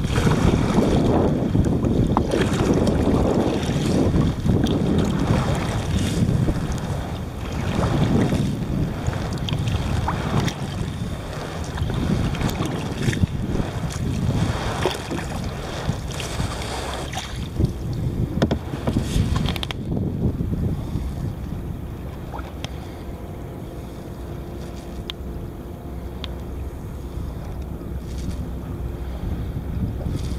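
Wind on the microphone and water splashing against a sea kayak's hull as it is paddled, with short splashes from the paddle strokes. About two-thirds of the way through it drops to a quieter, steadier wash of wind and water.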